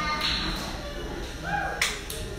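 One sharp, slap-like crack near the end, over the voices of a small crowd in a large, echoing hall.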